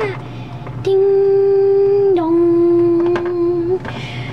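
A person humming two long steady notes, the second a little lower than the first.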